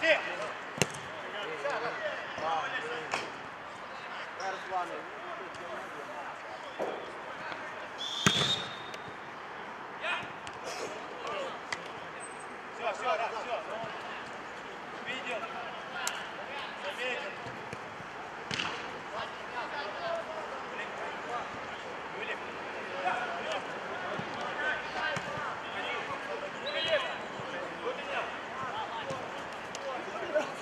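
Football players calling and shouting to each other during play, with the sharp thuds of a ball being kicked now and then. The loudest kick comes about eight seconds in.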